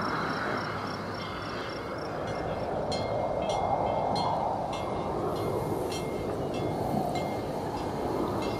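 A steady whooshing rush of noise, like wind. Faint high ticks come in from about three seconds in.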